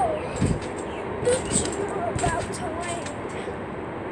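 A boy bouncing on a netted backyard trampoline: a few low thumps of the mat, about half a second in and again around two seconds in, with short crackles and a faint voice in the background.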